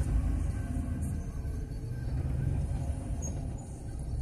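Steady low rumble of a vehicle creeping along slowly, its engine and tyres heard as a dull drone.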